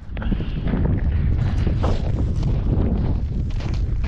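Strong wind buffeting the microphone in a steady low rumble, with scattered crunches of footsteps on a crust of ice and sleet over snow.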